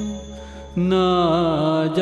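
Gujarati devotional kirtan sung by a male voice with accompaniment. The level dips briefly, then about three-quarters of a second in the singer comes in on a long held vowel that wavers in pitch.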